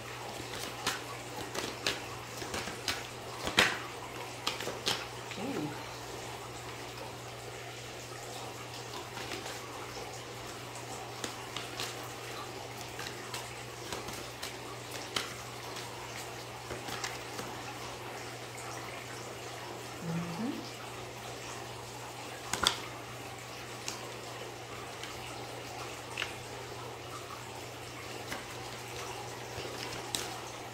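Oracle cards being shuffled and dealt out by hand onto a straw mat: scattered light clicks and snaps of card stock, with a couple of sharper snaps, over a steady hiss and low hum.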